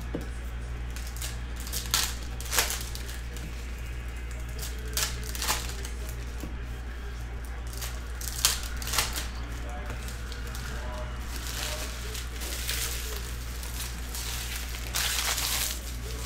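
Foil wrapper of a trading-card pack crinkling and tearing as it is opened, with cards being handled: scattered short sharp crackles and a longer rustle near the end.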